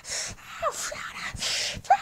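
A high-pitched, squeaky voice gasping and huffing in three breathy bursts, with a couple of short squeaks, about two-thirds of the way in and near the end.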